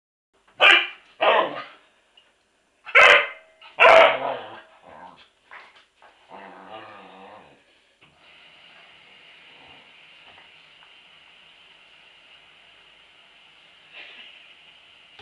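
Border collie barking: four loud barks in two pairs, then a few smaller yaps and a low growl. From about eight seconds in, a faint steady high-pitched hum continues.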